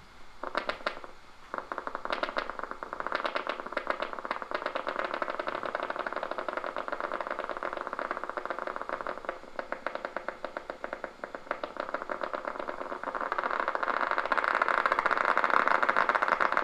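Single-fibre EMG audio from a concentric needle electrode in a voluntarily contracting muscle, played through the EMG machine's loudspeaker: a rapid train of sharp clicks and crackle from the firing muscle fibre potentials. It gets louder over the last few seconds as larger potentials appear.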